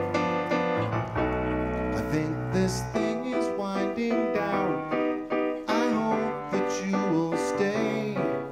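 Stage keyboard played in a piano voice in an instrumental break: sustained chords over a held low bass note for the first few seconds, then chords struck again and again in a steady rhythm.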